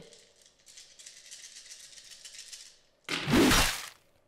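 A dozen six-sided dice shaken in cupped hands, a soft rattle lasting about two and a half seconds, then thrown onto the gaming mat in one loud clatter near the end: a close-combat roll to hit.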